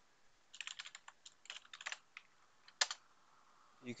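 Computer keyboard typing: a quick run of keystrokes for about a second and a half, then a single louder keystroke near three seconds in.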